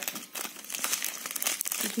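Thin clear plastic packaging bag crinkling and rustling irregularly as it is handled and pulled open.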